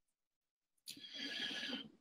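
A man's audible breath in, a drawn, hissing intake lasting about a second, taken just before he speaks again.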